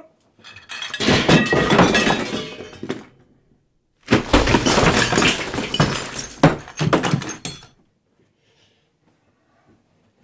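Loud crashing and clattering of things breaking, with glassy shattering, in two long bouts of about two and three seconds.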